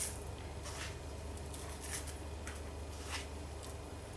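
Faint, soft scrapes and taps of a metal spoon scooping desiccated coconut from a measuring cup and scattering it over the tray, several separate strokes spread through, over a steady low hum.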